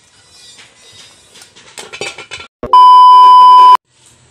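A loud, steady, high-pitched electronic beep lasting about a second, starting and stopping abruptly, an edit bleep laid over the footage. Before it, a few soft knocks and scrapes.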